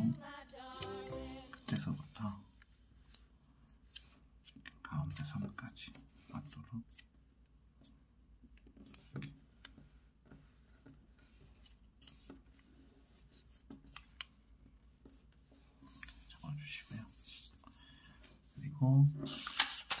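Paper being folded by hand on a wooden table: intermittent crisp rustles, crinkles and short scrapes as fingers press and run along the creases, with quiet stretches between them.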